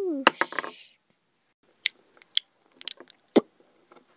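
A voice sliding down in pitch, cut off by a short hissing burst, followed by several light, scattered clicks of a plastic toy figure being set down and moved on a wooden tabletop.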